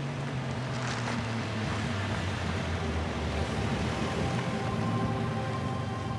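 A car approaching, a low rumble and noise that grow slightly louder, under held tones of dramatic background music.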